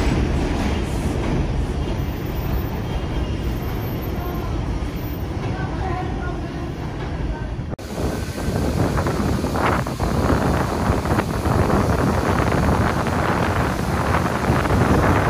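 NYC Subway 4 train on an elevated line pulling away from a station, its rumble slowly fading. Then, after an abrupt cut, wind buffets the microphone over the elevated tracks, with far-off train noise.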